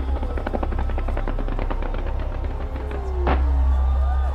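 Fireworks going off in a rapid run of crackling pops and bangs, with a single sharper bang about three seconds in, over a steady low rumble.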